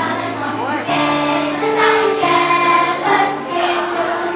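Children's choir singing a Christmas song over instrumental accompaniment, with steady held low notes changing pitch every second or so beneath the voices.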